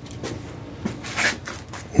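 Handling noise and footsteps: a few soft knocks and rustles of a hand-held camera being carried around a concrete shop floor, a little busier in the second half.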